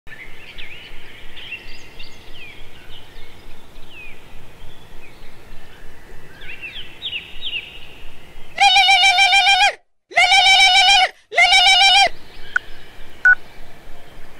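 Birds chirping in short, falling calls over faint outdoor background noise. Past the middle, a mobile phone rings three times, each ring a loud, slightly warbling electronic tone about a second long with short gaps between.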